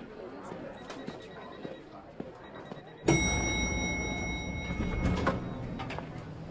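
Quiet office background with scattered small clicks, then about three seconds in a hum sets in and an elevator chime sounds, holding a steady high tone for about two seconds, followed by a sharp knock from the elevator doors.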